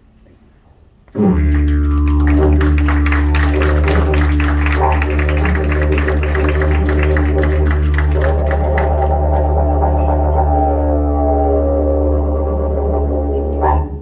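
Didgeridoo played as a continuous low drone with rhythmic pulsing in its upper overtones, which shift and waver in the second half. It starts suddenly about a second in and stops suddenly at the end.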